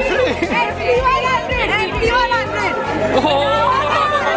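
A lively crowd of many voices talking, laughing and calling over each other, with music playing underneath.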